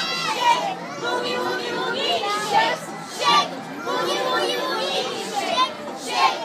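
A roomful of young children talking and calling out at once, many voices overlapping, with a few louder shouts.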